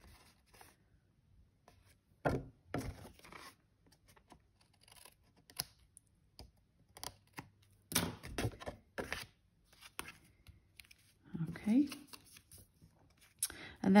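Scissors snipping a small scrap off a piece of card stock, a few separate sharp cuts, with the card being handled and set down on the craft mat.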